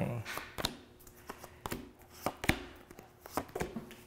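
Tarot cards being shuffled by hand and laid out on a table: a string of sharp, irregular card snaps and taps.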